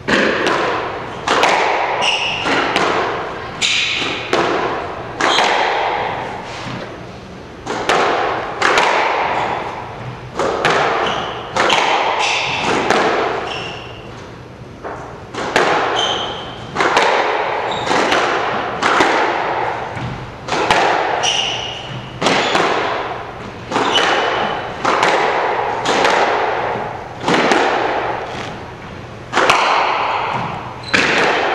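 Squash rallies: the hard rubber ball being struck by racquets and smacking off the court walls, a sharp crack about once a second, each ringing off in the echoing court. There is a short break near the middle before play picks up again.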